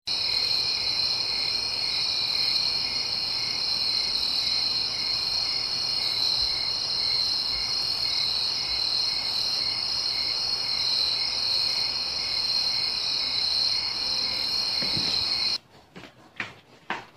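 Crickets chirping in a steady high-pitched drone with a faint regular pulse beneath it. The sound starts abruptly and cuts off suddenly shortly before the end.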